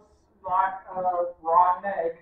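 A person's voice making three short voiced sounds with no clear words.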